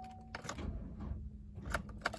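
Sharp clicks from the 2014 Chevrolet Impala's starter about half a second in and again near the end, as the key is turned on jump-box power and the engine fails to crank over and start.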